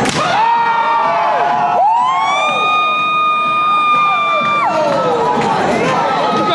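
A sharp open-hand chop slapping a bare chest, followed at once by several people shouting. Then comes a long, high-pitched scream of about three seconds that rises, holds steady and drops away near the five-second mark.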